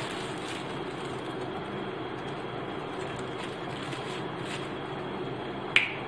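Steady rushing background noise with a faint hum, then one sharp click near the end.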